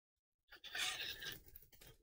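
A thin scraper card sliding and scraping under 3D-printed plastic fence parts on a printer bed to release them. It makes a short, soft scraping rustle about half a second in that lasts around a second.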